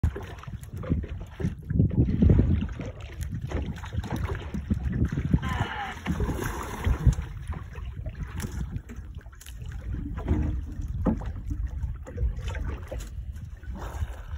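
Water lapping and slapping against the hull of a small outrigger boat drifting on open sea, with wind buffeting the microphone in an uneven low rumble. A few sharp knocks come from the boat.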